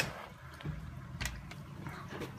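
Faint steady low hum of a reef aquarium's circulation pumps and protein skimmer running, with a soft click about a second in.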